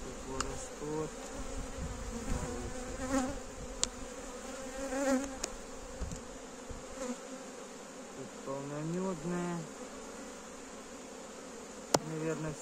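Honeybees buzzing around an open hive, a steady hum with single bees flying close past and their buzz rising and falling in pitch. A few sharp clicks come from the wooden frames being handled with a hive tool.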